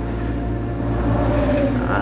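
Steady low hum of a running motor or machine.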